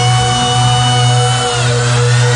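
Electronic dance music in a drumless breakdown: a held synth chord over a steady bass line, with some of its upper notes sliding down in pitch near the end.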